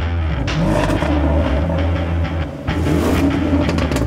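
Land Rover Defender's supercharged 5.0-litre V8 fired up by push button, then revved hard twice, its pitch climbing quickly each time.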